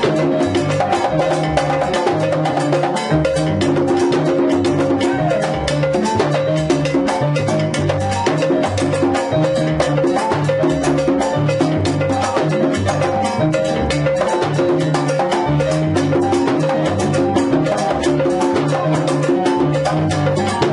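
Live salsa band playing an instrumental passage with no singing: conga drum struck by hand, over a repeating bass line and other percussion, in a steady, dense rhythm.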